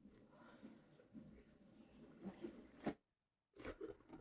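Faint rubbing and scraping of a cardboard puzzle box as its lid is slid off, with a few soft taps, the sharpest just before three seconds in.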